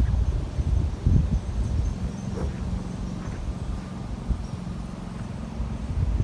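Wind rumbling on the microphone, with a golf club striking the ball off the tee about a second in.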